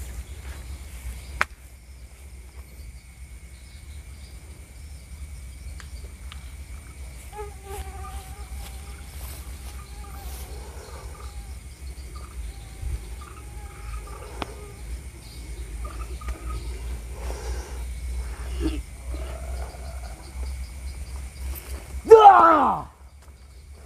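Night-time insects with steady high-pitched calls over a low rumble, a faint wavering voice-like sound in the middle and a couple of sharp clicks.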